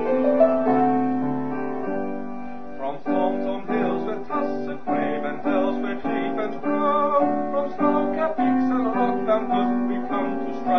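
Piano playing the accompaniment of a patriotic song: held chords at first, then steady repeated chords from about three seconds in.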